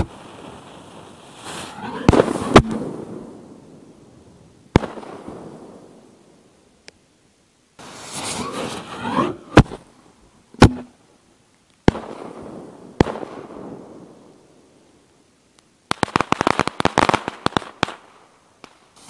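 Homemade 2.5-inch aerial ball shells firing in turn: each sharp launch or burst report is followed by a long rolling echo, with hissing swells between shots. Near the end comes a rapid flurry of crackles from crackling stars.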